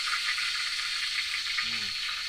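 Pork frying in hot oil in a wide pan: a steady sizzling hiss with small crackles throughout.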